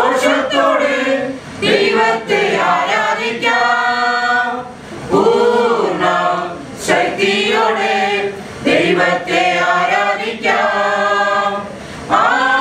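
A group of women singing a Malayalam Christian song together into microphones, with no instrumental accompaniment, in phrases broken by short pauses for breath.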